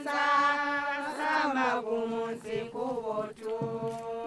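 Background music: a voice chanting in long, held notes.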